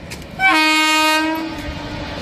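Horn of an Indian Railways electric locomotive: one steady blast starting about half a second in, loud for about a second, then trailing off quieter.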